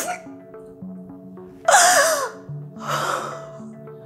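Soft background film score of sustained notes. About two seconds in, a woman lets out a loud wavering crying wail, followed by a shakier sob-like breath.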